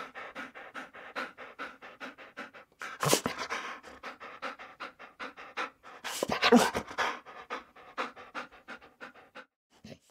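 Dog panting fast, about three to four breaths a second, with two louder bursts about three and six and a half seconds in.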